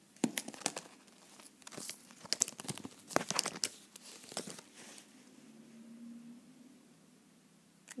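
Clear plastic coin-page pockets and cardboard 2x2 coin holders being handled, a run of sharp crinkles and clicks for about four and a half seconds that then dies down.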